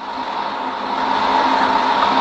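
Steady rushing noise with a thin held tone through it, growing slowly louder.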